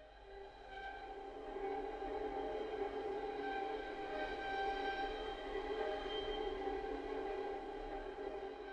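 Sampled solo violin from Spitfire Solo Strings (the progressive violin) playing col legno tratto, the wood of the bow drawn across the string. It swells in from silence over the first second or two and then holds sustained notes.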